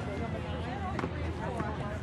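Faint shouting of players and spectators across an open soccer field, over a steady low rumble, with a single sharp knock about a second in.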